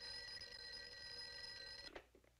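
A desk telephone ringing once, a steady ring of about two seconds that cuts off suddenly.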